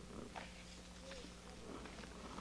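A quiet pause: a faint steady hum with a few soft, brief rustles.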